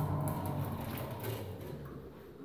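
Elevator car running with a low steady hum that dies away near the end.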